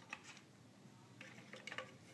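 Near silence with a few faint clicks and taps, one just after the start and a small cluster in the second half: hands handling a plastic spring balance and rubber band on a wooden tabletop.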